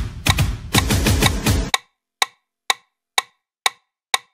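A K-pop track's instrumental ending with a heavy bass cuts off sharply just under two seconds in. After that a metronome click track ticks on alone, about two clicks a second.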